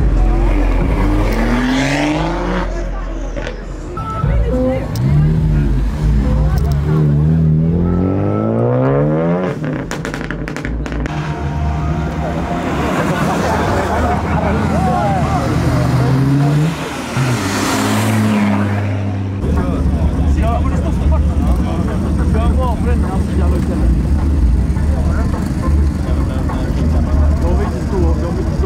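Modified car engines accelerating hard one after another, the pitch climbing through several gear changes, with a few sharp cracks about ten seconds in. The last third is a steady, deep engine rumble.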